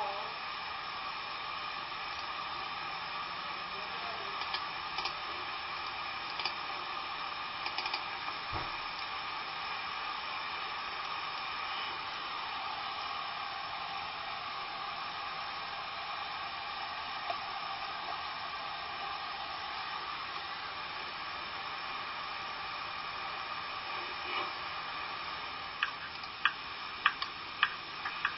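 Steady whirring hiss with several faint constant tones, such as a small fan or motor makes. A few light clicks come a few seconds in, and a quick run of them near the end.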